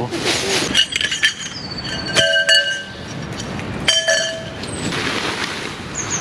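Dry fallen leaves rustling and crunching as they are scuffed and cleared underfoot, with tent fabric handled. Two ringing metallic clinks come about two and four seconds in.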